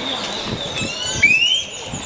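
Birds calling: several short high chirps, with a louder rising whistled call about a second in.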